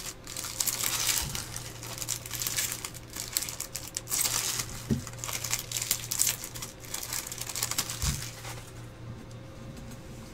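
Foil wrappers of Bowman baseball card packs crinkling and crackling as the packs are handled and opened, with a couple of soft knocks. The crinkling dies down near the end.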